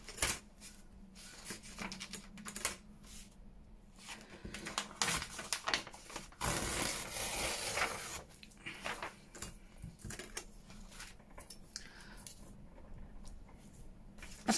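Paper rustling and light clicks and taps as sheets and strips of paper are handled and a plastic deckle-edge tear ruler is set down and slid on a cutting mat.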